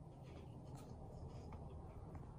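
Faint scratchy dabs of a fine paintbrush applying acrylic paint to a painted board, over a low steady hum.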